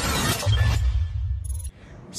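Title-sequence sound effect: a glassy shattering hit with a deep low rumble under it, which cuts off abruptly shortly before the end.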